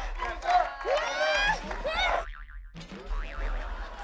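Excited wordless shouting and whooping from several people, then a little over two seconds in a short wobbling comic sound effect.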